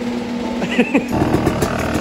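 Dirt bike engine running at idle with a rapid, steady pulsing, coming in about a second in after a short voice sound.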